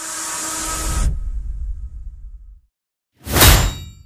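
Added film sound effects: a swelling whoosh over a low rumble that cuts off sharply about a second in, the rumble dying away. After a pause, near the end, comes a loud, sudden metallic clang with a ringing tail.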